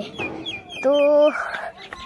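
A bird chirping in a quick run of short, high notes, several a second, over a spoken word.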